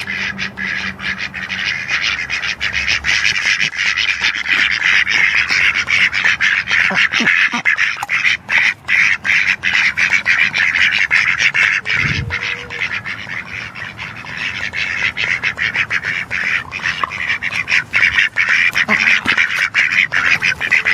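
Several domestic ducks quacking and chattering as they feed from a tin can, with many rapid clicks as their bills rattle against the metal.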